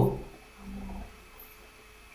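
A man's voice: the end of a spoken word at the start, then a short, faint, low hum of the voice about half a second in, over faint room tone with a steady electrical hum.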